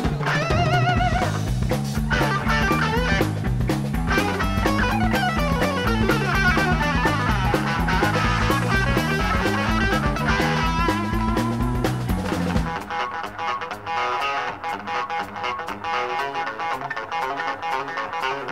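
Live blues-rock trio playing: electric guitar lead with wavering bent notes over a stepping bass line and drum kit. About two-thirds of the way in, the bass and drums drop out and the electric guitar plays on alone with rhythmic picked chords.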